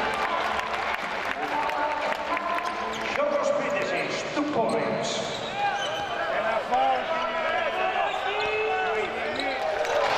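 Basketball game sounds on a hardwood court: sneakers squeaking in short chirps, the ball bouncing, and men's voices calling out and shouting.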